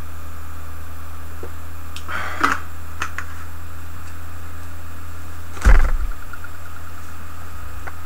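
Plastic drink bottle handled and its cap screwed on, with a brief plastic crinkle about two seconds in and a small click after it. A little past halfway comes a loud thump with a short rattle dying away after it, all over a steady low hum.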